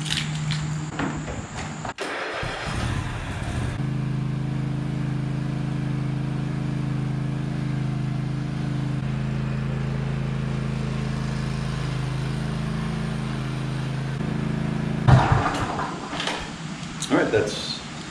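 Toro TimeCutter SS5000 zero-turn mower's engine being key-started on choke: it cranks briefly about two seconds in, catches and runs at a steady idle, then cuts off suddenly near the end.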